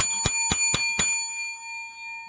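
A small bell rung in five quick strikes, about four a second, its ringing tone lingering and fading afterwards.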